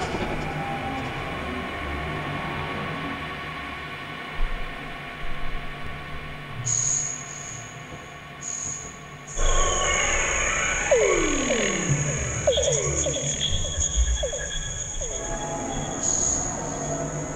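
Glitch/illbient electronic music generated live by a Pure Data patch: randomly selected samples processed through reverb and delay. A hazy drone fills the first half, a steady high whine comes in, and from about nine seconds in it gets louder with a cluster of falling pitch glides.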